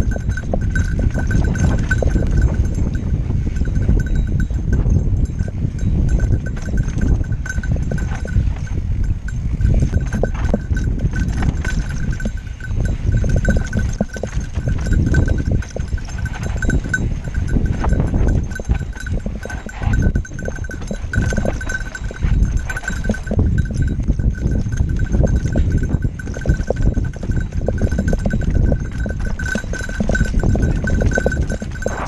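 Mountain bike ridden fast down a rocky dirt trail: a continuous rumble of wind and tyres, with constant knocking and rattling of the bike over rocks and ruts. A steady high ringing tone runs throughout.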